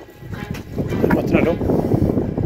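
Indistinct voices that the recogniser did not catch, with background music underneath.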